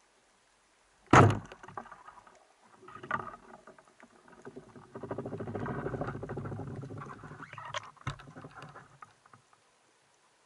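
A wooden band-powered speargun fires underwater with a sharp crack about a second in. It is followed by handling noises as the rubber bands are stretched to reload the gun: a long rattling stretch in the middle and another sharp click near the end.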